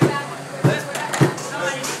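Three sharp knocks about 0.6 s apart, with low voices between them.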